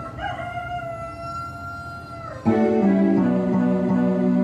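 A single high note held steadily for about two seconds, then about two and a half seconds in an organ comes in loudly with sustained chords, playing the introduction to a congregational hymn.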